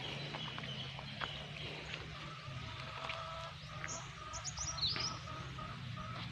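Birds chirping in the background, with a quick run of high chirps and a falling one about four to five seconds in, over a low outdoor rumble.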